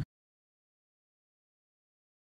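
Complete digital silence: the audio track cuts out as the last word ends.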